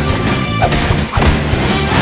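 Dubbed-in fight sound effects: two or three crashing impacts about half a second apart, over background music.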